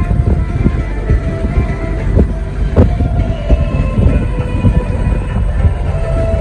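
A vehicle driving over a rough dirt track, heard from inside: a continuous heavy rumble of tyres and suspension, broken by frequent knocks and rattles as it jolts over the ruts.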